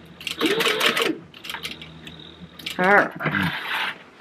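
Sewing machine top-stitching in a short burst during the first second, its motor speeding up and then slowing, with fast even stitch strokes. Near the three-second mark comes a short, wavering vocal sound.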